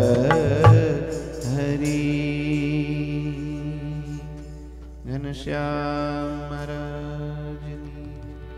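Devotional kirtan music closing: a few tabla strokes at the start, then a held harmonium chord. About five seconds in there is a brief break and the chord changes, and the last chord slowly fades.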